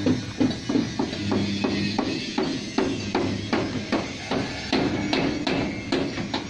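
Hammer blows in a steady, fast rhythm, about three strikes a second, as in truck body-building work.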